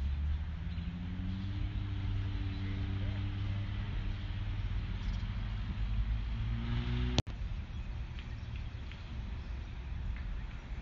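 A vehicle engine idling: a steady low rumble with a faint hum, broken by a brief dropout about seven seconds in.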